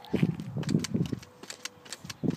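Small child's bicycle with training wheels rolling over a concrete sidewalk: irregular rattling clicks and low knocks, busiest in the first half.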